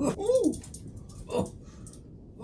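A man's voice giving short wavering 'oh' cries, play-acting being given an electric shock: one rising-and-falling cry at the start, then a shorter one about one and a half seconds in.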